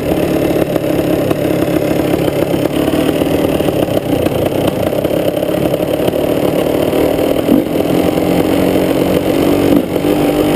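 KTM EXC two-stroke dirt bike engine running at a steady cruising throttle, with a brief dip in engine sound near the end.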